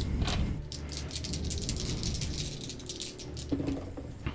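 Dice rattling and clattering as they are rolled for a spell's damage, a quick run of small clicks lasting about two seconds.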